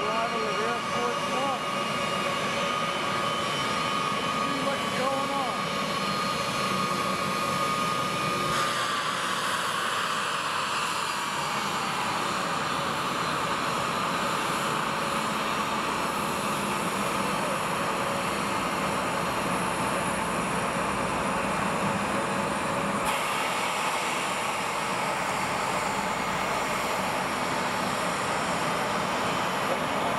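Twin jet engines of a Boeing 757 (the C-32A flown as Air Force One) running at taxi power. A steady high whine drops in pitch as the jet rolls past about nine seconds in, and the engine rush grows louder.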